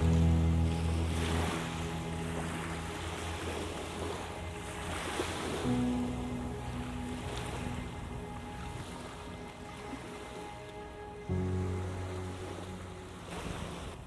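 Waves washing onto a shore, rising and falling, under background music of long held chords that change twice.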